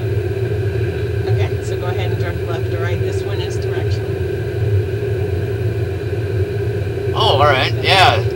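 Ford VIRTTEX driving simulator running a simulated highway drive: a steady low rumble with a constant hum underneath, unchanging throughout.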